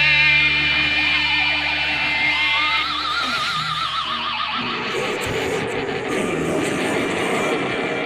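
Heavy metal band recording: a distorted electric guitar chord rings out over held bass. About two seconds in, a lead guitar line with wide, fast vibrato comes in. Around five seconds in, the full band's distorted guitars and drums start up again.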